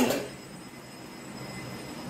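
Cloth rubbing over stainless-steel bowls as they are wiped dry, a steady soft rustling hiss, with a brief sharp clink right at the start.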